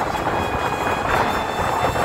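Steady road noise of a moving motorcycle taxi, with wind rumbling irregularly over the phone's microphone.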